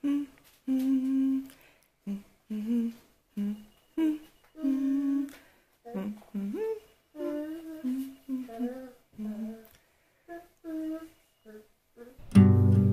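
A person humming a slow melody with closed lips, in short held notes and phrases separated by brief pauses.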